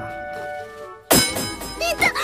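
Soft sustained background music, then about a second in a single sharp knock with a short ringing tail: an anime hit sound effect for a finger flicking a hard mask. A girl's pained cry starts near the end.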